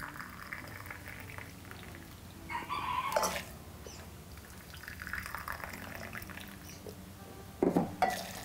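Water poured in a thin stream from a metal kettle into a ceramic mug, in a few runs with louder stretches, and near the end tipped from the mug over dried marcela flowers in an aluminium pot.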